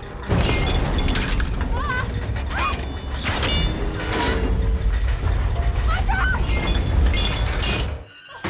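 A rusted steel ladder creaking, squealing and clanking as its bolts give way and it tears away from the tower, over a deep rumble, in film sound design. The sound comes in suddenly about a third of a second in.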